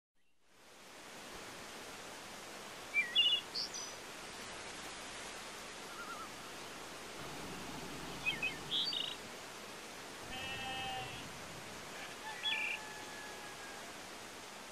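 Faint outdoor country ambience: a steady background hiss with birds chirping in short bursts a few times, and one brief longer animal call about ten seconds in.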